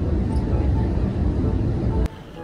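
Airliner cabin noise in flight: the steady low rumble of the jet engines and airflow, heard from inside the cabin.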